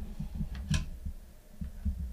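Low handling noise with a faint, short click about three-quarters of a second in, as a power plug is pushed back into a Power-over-Ethernet network switch.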